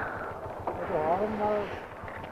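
A faint voice about a second in, over the low rumble of a motorcycle on a wet road.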